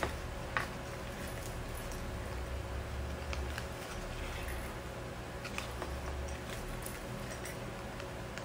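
Needle and thread being pulled through a paper disc and a book page: scattered small clicks and paper rustles, the sharpest about half a second in, over a low steady hum.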